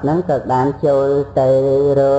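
A man chanting in a drawn-out, sing-song intonation: a few short syllables sliding in pitch, then one long held note near the end.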